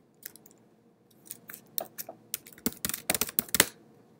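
Keystrokes on a computer keyboard as a terminal command is typed: a couple of isolated taps, then a quick run of keystrokes in the second half, the last ones the loudest.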